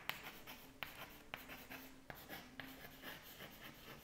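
Chalk writing on a chalkboard: a faint, irregular run of short taps and scratches as words are written stroke by stroke.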